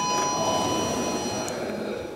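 DEVE hydraulic elevator's two-note arrival chime, a higher note followed by a slightly lower one, ringing out and fading within the first second and a half, over the rumble of the car and landing doors sliding open.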